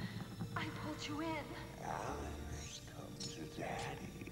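Film soundtrack: a held tone under breathy, wordless vocal sounds, gasps and moans that glide up and down in pitch.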